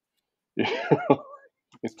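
A man clears his throat once, a short rough sound of under a second, after half a second of silence.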